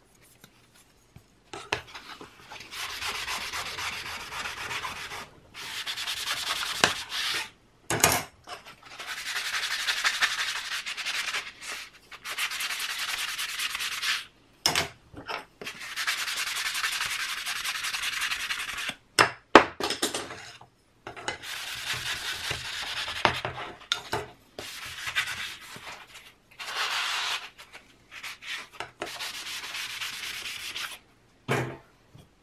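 A sanding sponge rubbed by hand over strips, scuffing them before gluing with polyurethane glue. It comes as repeated stretches of scratchy scrubbing a few seconds long, with short pauses between them and a few sharp knocks.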